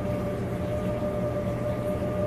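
Washing machine running: a steady mechanical hum with a thin, constant whine over it. The man complains it seems to have had water going for hours.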